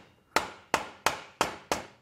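Repeated blows knocking a Kord heavy machine gun's barrel forward to free it from the receiver: five sharp knocks, about three a second, each ringing briefly.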